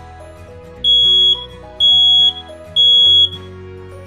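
Residential smoke alarm sounding its test signal after its test button is pressed: three loud, high-pitched half-second beeps with short equal gaps, the temporal-three alarm pattern. The alarm sounding shows the unit and its battery are working.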